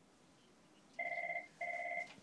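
A telephone ringing: two short electronic ring bursts, about half a second each, the first starting about a second in.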